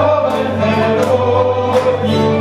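Folk dance music with a group of voices singing together over a steady low drone, with a regular beat about every 0.7 seconds.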